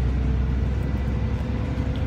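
Steady low rumble of a bus heard inside the passenger cabin, with a faint steady hum above it.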